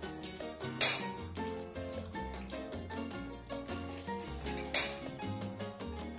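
Background music with a steady bass line, over which metal cutlery clinks sharply against a ceramic dish twice, about a second in and again near five seconds in; the clinks are the loudest sounds.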